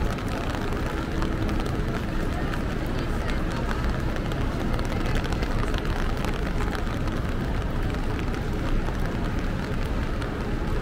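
Steady city street noise in the rain: a constant low rumble of traffic under a dense patter of small raindrop ticks.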